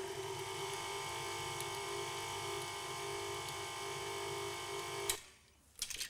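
Electric kitchen mixer motor running steadily as it beats melted chocolate into butter and icing sugar for a fudgy chocolate icing, switched off about five seconds in. A couple of light clicks follow near the end.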